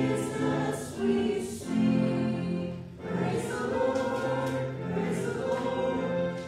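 A choir singing, with long held notes; the singing dips briefly about three seconds in.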